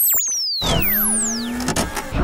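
Synthesized transition sound effects: a high swoosh falling in pitch, then about half a second in a heavy hit with a held humming tone, and a second hit near the end.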